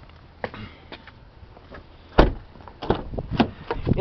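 A 2014 Dodge Journey's car door shutting with a loud thud about two seconds in, among lighter clicks and knocks from the door handles and latches.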